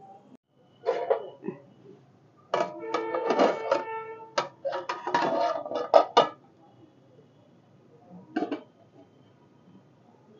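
Steel lid and ladle clanking against an iron kadhai as the lid is handled and lifted off: a clink about a second in, a run of sharp ringing metal clinks from about two and a half to six seconds in, and a single clink near the end.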